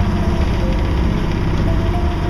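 A sailboat's engine running steadily while the boat motors along in near-calm air, a constant low drone with a fine even beat.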